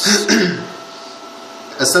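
A man clears his throat and speaks briefly, then a pause with a faint steady room hum before his speech resumes near the end.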